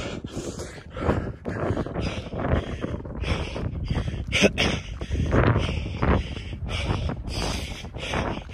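A man's hard, rhythmic mouth breathing while running uphill, a loud breath about every half-second to second: he is out of breath from the climb and no longer breathing through his nose.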